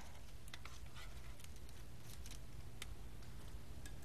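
Faint, scattered light clicks and taps as crispy chicken strips are piled onto a serving platter, over a steady low room hum.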